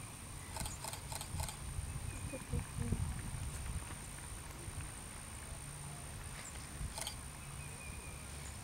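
Horse walking on grass, its hoofbeats soft and muffled by the turf, with a quick run of faint clicks about a second in.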